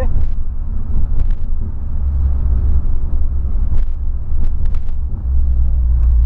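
A 2008 Volkswagen Polo Sedan driving, heard from inside the cabin: a steady low engine and road rumble that swells and eases a little, with a few faint clicks.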